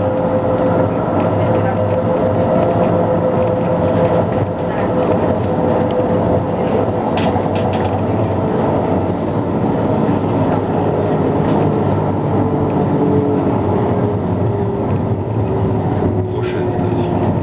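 Tram running, heard from inside the car: a steady rumble of wheels on rails with an electric motor whine that slowly falls in pitch, and a few light clicks.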